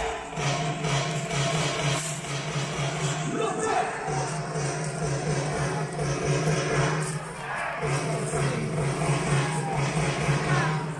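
Music over a baseball stadium's loudspeakers with the crowd of fans cheering along; a low held note comes in three stretches of about three seconds each.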